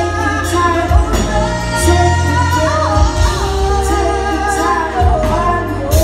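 Live neo-soul band: a woman sings a line that bends and wavers around its notes, over held bass notes and drum hits.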